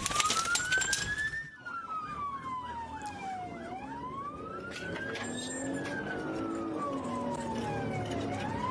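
Police cruiser siren on a slow wail, rising and falling in pitch about twice. A dense crackle of clicks runs under it for the first second and a half.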